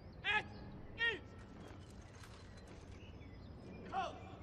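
Three short, high-pitched voice calls, two close together at the start and one near the end, each rising and falling in pitch, over a steady low background murmur with scattered faint clicks.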